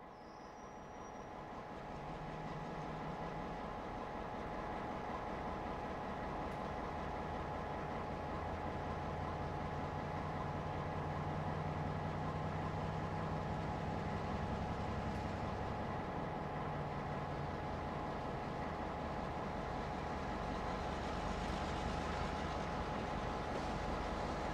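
Diesel locomotive running while moving freight cars: a steady low engine drone with thin steady higher tones over a wash of noise, fading up over the first few seconds.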